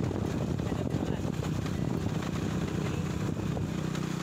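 Motorcycle engine running steadily while riding, mixed with wind noise on the microphone.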